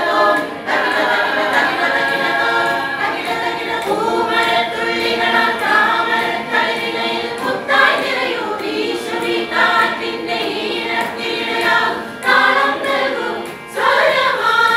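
A group of women singing a song together at microphones, with short pauses between phrases.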